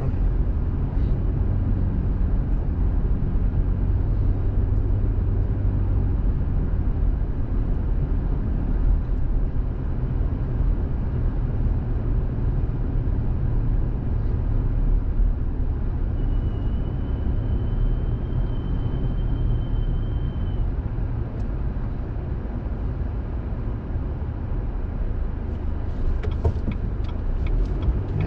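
Steady low road and engine rumble of a car driving slowly through town streets, heard from inside the cabin, with a low engine hum that eases after the first few seconds.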